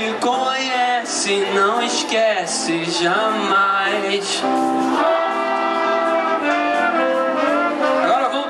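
Live band's horn section, trumpet and trombone, playing a melody of held notes, with voices singing along.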